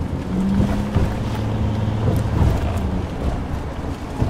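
Car engine and road noise heard from inside the moving car's cabin: a steady low engine drone over tyre rumble, with a few light knocks.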